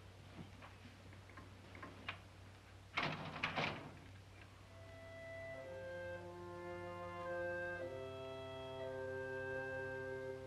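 A short, loud noisy burst about three seconds in, then an orchestral film score with bowed strings fades in as slow, sustained chords.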